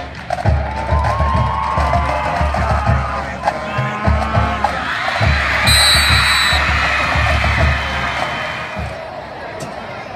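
High school marching band playing in the stands, a heavy drum beat under brass, over crowd noise and cheering. A short, high whistle blast sounds about six seconds in.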